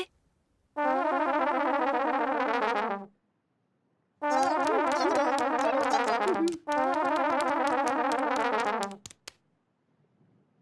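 Cartoon musical sound effect: a wavering, warbling synthesizer-like tone played in three stretches of about two seconds each. There is a gap of about a second after the first stretch, and a few short clicks come near the end.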